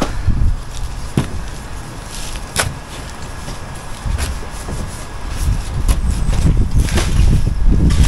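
Uneven low rumble on the microphone, broken by a few sharp knocks and clicks as concrete blocks and tools are handled.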